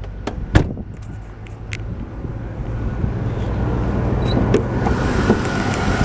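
Land Rover Discovery's V8 engine idling steadily, growing louder over the last few seconds as the engine bay is reached with the hood open. A few sharp clicks and knocks come in the first two seconds.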